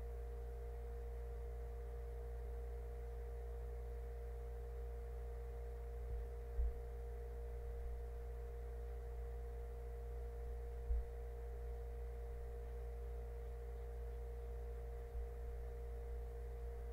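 Steady electrical hum made of several fixed tones, with a few soft low thumps about six, eleven and fifteen seconds in.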